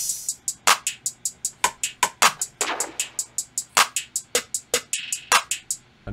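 Programmed trap hi-hat sample from a drum kit playing back in a beat pattern: fast, crisp ticks at about five a second, broken by quick rolls about halfway through and near the end. A heavier hit lands about every second and a half.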